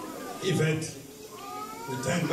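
A man speaking into a handheld microphone through a hall's sound system, a short phrase about half a second in, followed by a brief, high, rising sound near the end.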